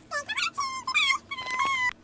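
A very high-pitched, squeaky voice making wordless whining squeals that slide up and down in pitch, with one held note near the end.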